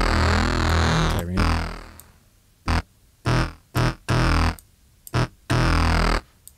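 A sampled synthesizer note played from Logic Pro X's Sampler: one held note of about two seconds, then several short notes with silent gaps between them. The note is being auditioned while its amplitude envelope is adjusted, because its attack sounds too soft and not punchy enough.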